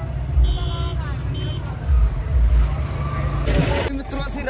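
Low, uneven rumble of road traffic and vehicle engines in a crowded street, with two short high-pitched beeps about half a second and a second and a half in, and faint voices.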